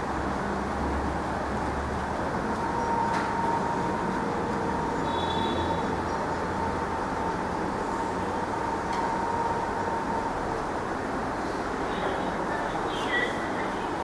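Steady background noise of a room, with a faint steady tone through the middle and a few light clicks.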